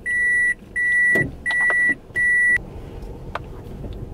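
A car's in-cabin reverse-gear warning buzzer beeping four times, evenly spaced, on one steady high pitch, as the car backs out, over the low hum of the running car.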